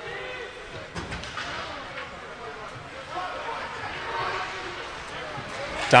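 Ice hockey rink game sound: faint voices of spectators and players over the hiss of skates and sticks on the ice, with a dull thump about a second in.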